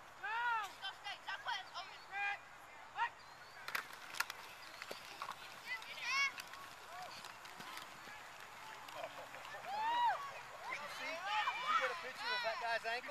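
Shouts and calls from people across a football field during a play: short rising-and-falling yells, some overlapping, with a cluster of calls near the end. A few sharp knocks sound about four seconds in.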